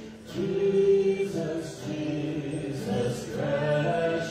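Several voices singing a worship song together in long held notes, accompanied by an acoustic guitar.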